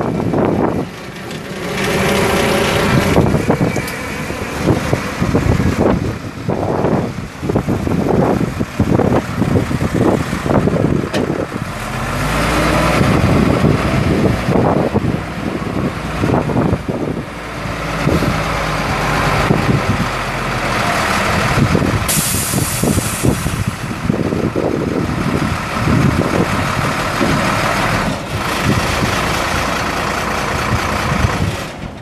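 A 1994 Chevrolet Kodiak dump truck's Caterpillar 3116 inline-six turbo diesel idling steadily, with a brief high hiss about two-thirds of the way in.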